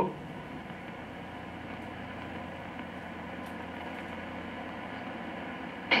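Steady low hiss with a faint hum: the background noise of an old black-and-white film soundtrack between lines of dialogue. A short whispered "psst" comes at the very end.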